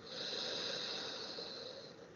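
One long, slow, deliberate deep breath close to the microphone, taken as part of a guided breathing exercise. It is a steady airy hiss that tapers off near the end.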